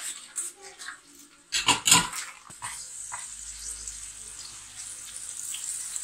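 Strips of bacon sizzling in hot olive oil in a frying pan, settling into a steady hiss for the second half. A loud cluster of sharp sounds comes at about two seconds, the loudest thing heard.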